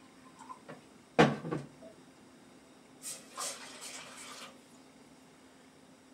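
A plastic water pitcher and cup handled on a countertop while water is measured out: one sharp knock about a second in, then a rushing splash of poured water for about a second and a half.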